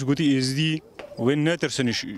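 A man speaking, with one long drawn-out vowel in the first second.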